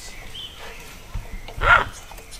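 A short animal call, the loudest sound here, about a second and a half in, over a faint steady background.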